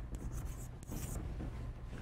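Chalk writing the numerals 2050 on a blackboard: a few short, quiet scratches and taps that die away a little over a second in.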